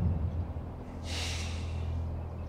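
A man's short, sharp breath out through the nose, a scoffing snort, about a second in, over a steady low hum.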